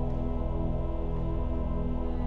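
Mixed church choir singing a long held chord, sustained over pipe organ with a deep steady pedal note beneath.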